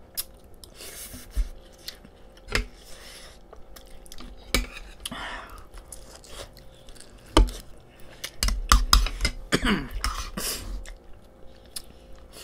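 Close-up chewing and mouth sounds of people eating, with scattered sharp clicks of cutlery on ceramic bowls. The sharpest click comes a little past the middle, and a quick cluster of them follows about three quarters of the way in.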